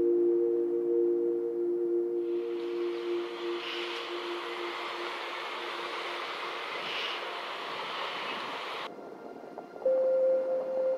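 Ambient music of held, bell-like tones fading away over the first few seconds. About two seconds in, a steady rushing noise of wind and surf comes in over it and cuts off abruptly near the end, and a new held music tone starts at the very end.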